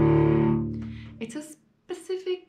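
Cello playing a fifth as a double stop, one finger laid across two strings, held on a steady low note that fades out about a second in. A few spoken syllables follow near the end.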